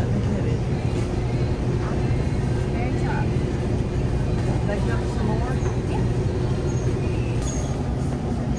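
Steady low mechanical hum of supermarket refrigerated freezer cases and store refrigeration, with faint voices.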